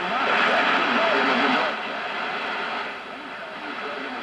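Portable radio's speaker hissing with static, a faint voice coming through the noise: the Talking House TH5 transmitter's spurious third harmonic picked up at 4.5 MHz. The hiss is loudest in the first half and eases off about halfway through.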